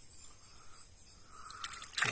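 Shallow lake water lapping softly around hands holding a large silver arowana for release, then splashing that builds near the end as the fish swims off.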